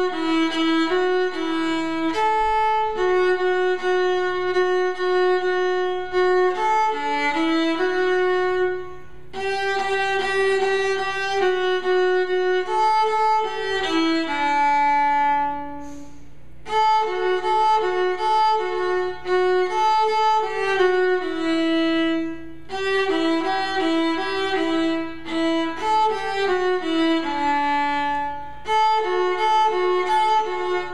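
A solo bowed string instrument of the violin family playing a simple melody line of repeated and held notes. There is a short break about nine seconds in and another around the middle.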